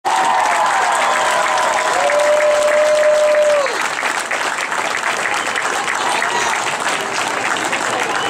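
Crowd applauding in the stands, with a few long cheering shouts over the clapping; the clearest is held for more than a second about two seconds in, then falls away.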